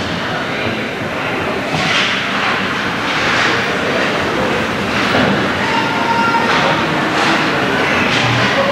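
Ice hockey rink sound during play: skate blades scraping and carving on the ice, with several swishes over a steady noise.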